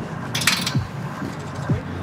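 Zipline harness gear being handled: a short clink and rustle of metal clips and straps about half a second in, over a steady low background.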